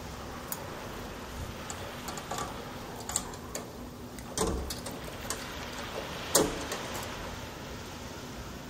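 Steady outdoor background noise with a faint low hum, broken by a few sharp clicks, the loudest about six seconds in.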